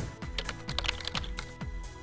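Electronic music with a steady beat, with a keyboard-typing sound effect on top: a quick run of sharp clicks from about half a second in to just past one second.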